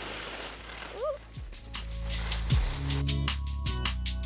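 Background music with a beat building up: a few deep kick-drum hits, then a fuller, busier beat from about three seconds in.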